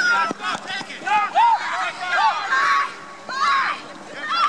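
Several people shouting and yelling in high-pitched voices in short calls, with one call held briefly near the end.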